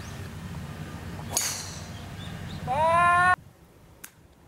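A driver strikes a golf ball off the tee with a single sharp, high crack about a second and a half in. About a second later a high voice calls out a long rising 'oh' that is cut off abruptly.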